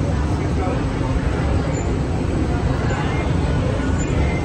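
Steady low rumble of a Radiator Springs Racers ride car creeping forward through the loading station, with indistinct voices.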